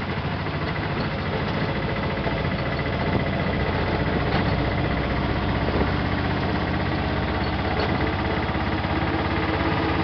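Auto-rickshaw's small engine running steadily with a fast, rough low beat, heard from inside the crowded passenger cabin.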